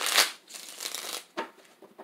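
Tarot cards being riffle-shuffled by hand and bridged: a loud riffle of cards flicking together at the start, a softer riffle running on for about a second, then a single tap.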